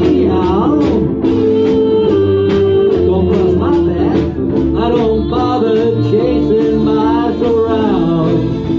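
Live ukulele band playing: strummed ukuleles and a walking bass line over a drum kit's steady beat. A lead melody slides up and down in pitch through an instrumental break.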